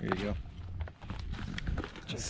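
A brief bit of voice at the very start, then faint footsteps on dry dirt and gravel.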